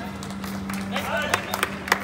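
Outdoor basketball game in play: a few sharp knocks in the second half, from the ball and players' feet on the court, over distant voices and a steady low hum.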